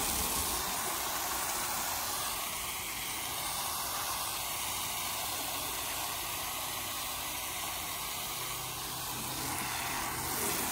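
Ontel Car Wash Cannon hose-end foam sprayer on a garden hose, spraying soapy water onto a pickup truck's painted side panels: a steady hiss of spray spattering on the metal.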